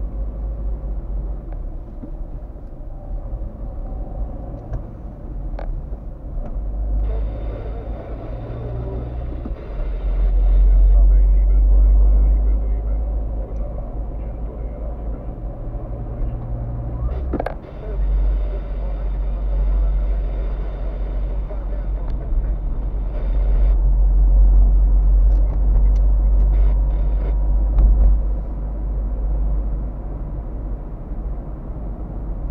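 Car interior noise while driving: a steady low engine and road rumble that swells louder twice, with tyre and road noise rising and falling and a few sharp clicks.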